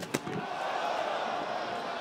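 Two quick sharp thuds from a wrestling brawl in the ring, right at the start, followed by a steady wash of crowd noise.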